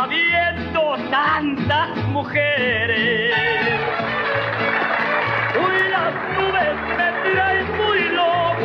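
Ranchera music played by a mariachi band: a melody with vibrato in the upper instruments over a steady, pulsing bass line.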